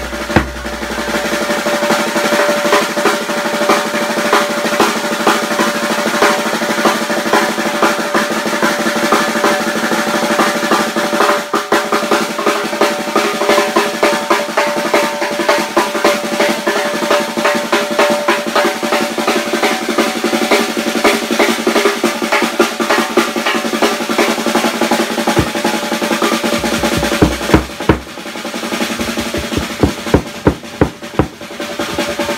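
Drum-led music: a fast, continuous snare-drum roll over steady held tones, breaking into louder separate drum strikes near the end.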